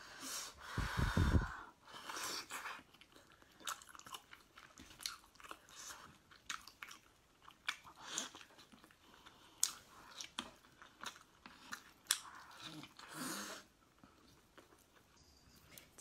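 Close-up chewing and biting of a large sauce-glazed braised meatball: short mouth clicks and smacks at irregular intervals, with a louder, low, muffled sound in the first second and a half.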